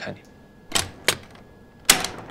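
A few short, separate clicks and knocks: a soft noisy tap just under a second in, a light click a moment later, and a sharper, louder click near the end.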